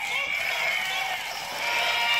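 Faint voices with a little music under them.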